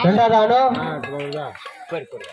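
A person's voice talking, loudest in the first half second and trailing off toward the end.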